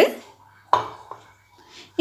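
A single clink of steel kitchenware about two-thirds of a second in, ringing briefly as it fades, followed by a fainter knock.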